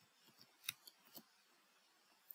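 Near silence with three faint computer mouse clicks a little under a second in.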